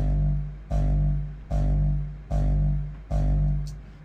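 The distorted tail layer of a hardstyle kick drum, looped in a DAW: five hits about 0.8 s apart. Each is a long, pitched, crunchy low tone that fades before the next.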